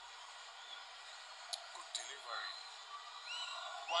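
Faint football stadium ambience with distant, indistinct voices, and two short sharp knocks about one and a half and two seconds in.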